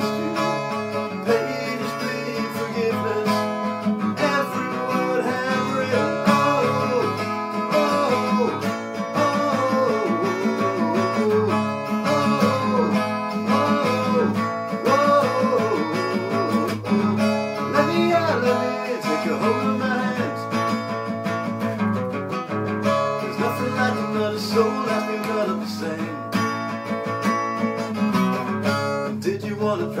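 Steel-string acoustic guitar strummed in a steady rhythm, playing the chords of a rock song, with a voice singing a melody over it.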